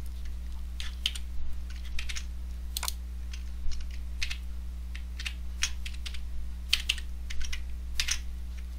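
Computer keyboard keys tapped irregularly, a scattered series of short clicks, over a steady low electrical hum.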